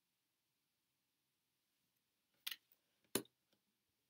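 Near silence, broken by two short light clicks a little under a second apart, about two and a half seconds in: a tarot card being laid down on the cards on a wooden table.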